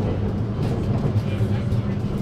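Cabin noise of a moving passenger train carriage: a steady low rumble with a constant low hum.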